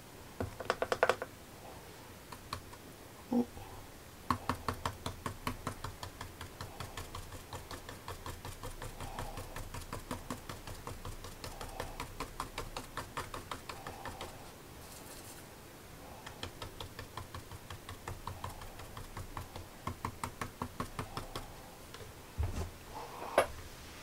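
A paintbrush dabbing on heavy watercolour paper to stipple leaves: long runs of quick light taps, several a second, with a short pause midway.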